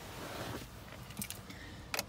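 Faint rustling and handling noise with a few light clicks, the sharpest one near the end.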